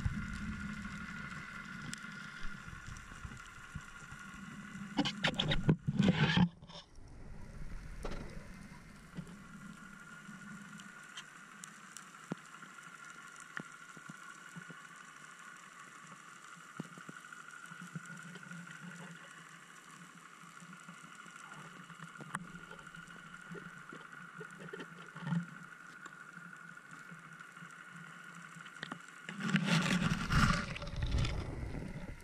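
Underwater sound picked up by an action camera in its waterproof housing while diving over a weedy seabed: a steady high hum with scattered soft knocks, and a loud rushing burst of water noise about five to six seconds in.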